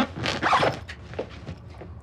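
A bag's zipper being pulled in several quick strokes, strongest in the first second, with a few weaker strokes after.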